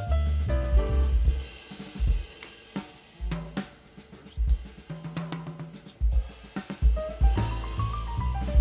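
Instrumental background music with drum kit and bass. The melody drops out for a few seconds in the middle, leaving mostly drum and bass hits, then returns near the end.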